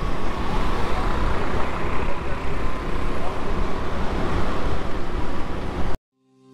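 Busy street ambience: steady road traffic noise with faint voices in the background. It cuts off suddenly at the end.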